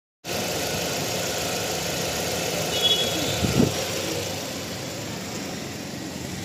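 Car engine idling steadily with its bonnet open, a continuous low hum, with a couple of brief knocks about three seconds in.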